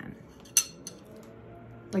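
A fork clinking against a small plate: a few quick light clinks about half a second in.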